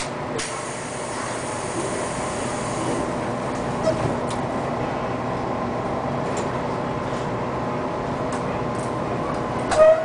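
Running noise of a JR Kyushu 813 series electric multiple unit moving slowly, heard from inside behind the driver's cab: a steady rumble with a few light clicks, and a short loud tone near the end.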